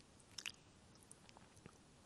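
Near silence: room tone, with a few faint small clicks, the clearest about half a second in.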